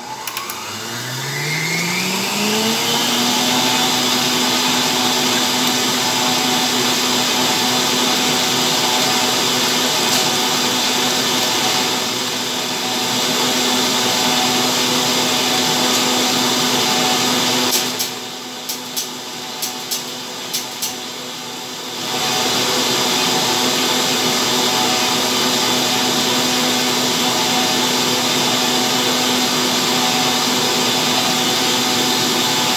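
Electric stand mixer whisking eggs and sugar in a stainless steel bowl. The motor winds up in pitch over the first three seconds, then runs steadily. About two-thirds of the way through it drops lower for a few seconds, with a few sharp clicks, before coming back up to full speed.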